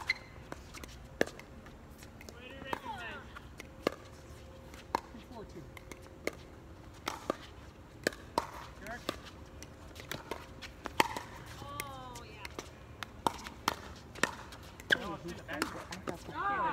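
Pickleball paddles striking a plastic pickleball in a doubles rally: a string of sharp pocks, irregular and about once a second.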